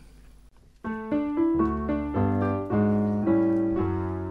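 Solo piano starts playing about a second in, after a short quiet gap: slow held chords over low bass notes, the introduction to a choral arrangement.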